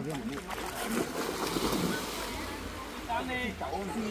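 River water splashing as a person wades in and plunges forward to swim: a spell of splashing from about half a second in that eases off after about two seconds.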